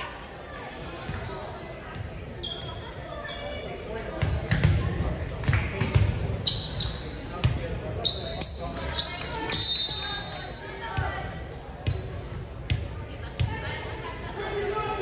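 Volleyball bounced on a hardwood gym floor, a run of thuds about every half second, with sneaker squeaks on the floor, in a large echoing gymnasium. Players' voices throughout.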